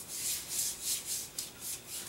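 A hand rubbing body illuminator cream into the skin of a forearm: a run of soft, hissing back-and-forth strokes, about two a second.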